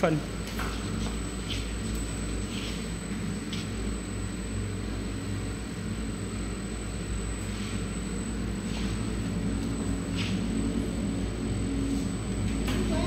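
Rice-noodle sheet steaming machine running steadily: a low hum and rumble from its motor-driven conveyor, with a few faint clicks.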